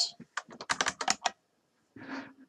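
Computer keyboard typing: a quick run of about a dozen keystrokes that stops a little past halfway.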